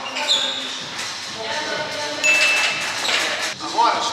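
Iron weight plates hanging from a dip-belt chain rattle and thud onto the gym floor as a weighted pull-up ends, with music playing underneath.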